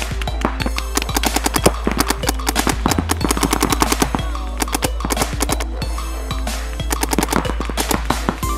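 Paintball markers firing in rapid bursts of many shots a second, with short pauses between runs, over background music.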